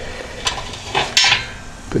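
Steel rebar hanging rods of a Pit Barrel Cooker clinking and scraping against the steel barrel as they are set back into place: a few sharp metal knocks, the loudest a little after a second in.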